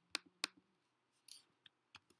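A few sharp computer-mouse clicks: two close together near the start and a couple of small ones near the end, with a short scratchy noise in between.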